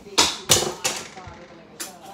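A few sharp taps and knocks, four in two seconds: a toy catapult flicking a key chain, which lands and clatters on the floor.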